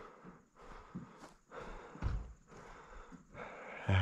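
A man breathing hard in uneven breaths, out of breath after a run.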